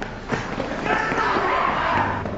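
Angry shouting from pursuers ("We're gonna kill you, you bastard!"), rising from about a second in, over quick footsteps slapping on pavement as someone runs.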